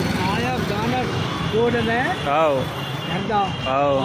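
People talking, with a steady low hum of street traffic beneath.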